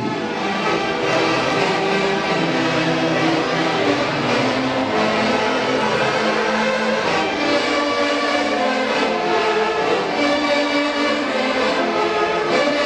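Live Peruvian orquesta típica playing a tunantada dance tune, with violins and wind instruments sounding long held melody notes together at a steady, lively level.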